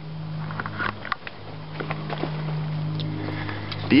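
A steady low engine drone that grows somewhat louder through the first couple of seconds, with a few faint clicks.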